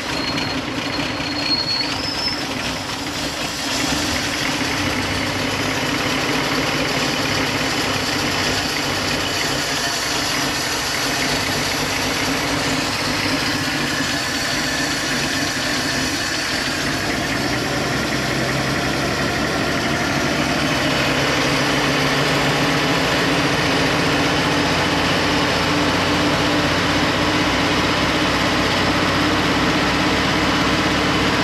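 1980 GMC P15 step van's 292 inline-six engine running steadily on fuel fed from a portable gas can, growing a little louder about twenty seconds in. A faint high whine steps up in pitch about two seconds in.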